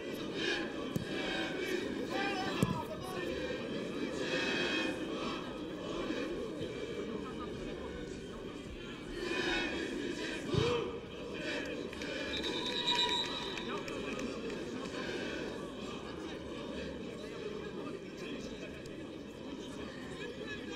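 Football stadium ambience during live play: scattered shouts and calls from players and spectators over a steady background, with a sharp thud of the ball being kicked about two and a half seconds in.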